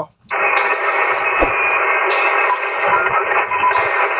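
Two-way radio static: after a brief drop-out, a steady hiss from the radio speaker between voice transmissions, with one low knock about one and a half seconds in.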